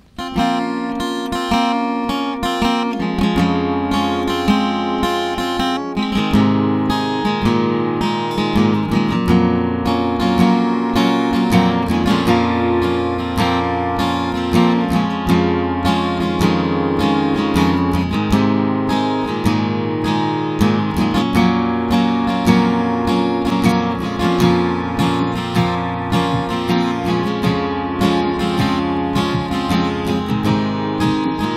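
Acoustic guitar strummed in a steady rhythm, playing the instrumental intro of a song, with an electronic keyboard holding notes underneath.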